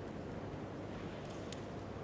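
Low, steady background hiss of the broadcast's court ambience, with a faint click about one and a half seconds in.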